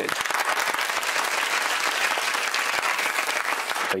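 Applause from many people clapping, starting suddenly and cut off abruptly about four seconds later.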